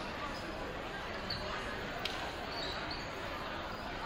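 Steady crowd murmur filling a school gymnasium during a stoppage in a basketball game, with a few brief high sneaker squeaks on the hardwood floor and one sharp knock about two seconds in.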